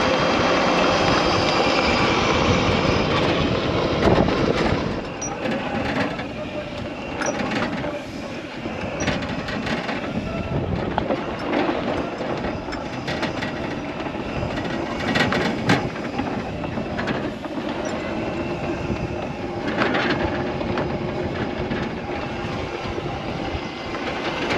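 Electric E-Z-GO golf cart driving over rough grass, its body and loose parts rattling and knocking over the bumps above a steady rushing noise, a little louder in the first few seconds. The 36-volt cart is running well on replacement batteries after a bad battery.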